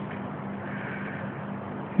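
Steady low background noise with a faint hum, in a pause between unaccompanied sung phrases.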